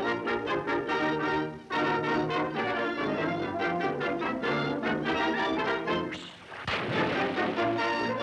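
Early-1930s cartoon orchestra score led by brass, with a brief break about a second and a half in; about six seconds in the music drops away and a sudden sharp crash comes in before the band resumes.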